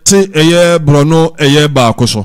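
A man's voice chanting a recitation in Arabic, in four or five phrases on long, level held notes with short breaks between them.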